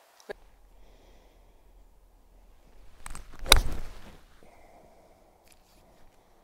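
A golf club swung and striking the ball off the fairway: a short swish, then one sharp strike about three and a half seconds in.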